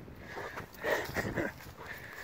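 A Rottweiler making a short cluster of vocal sounds, loudest about a second in.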